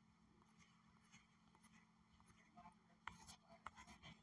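Near silence: a faint low hum with scattered soft ticks and rustles, several of them close together about three seconds in, from fingers handling and swiping a phone's screen.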